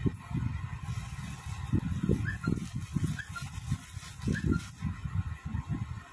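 Irregular low rustling and bumping from movement and handling close to the microphone. Three faint short high chirps come about two, three and four and a half seconds in.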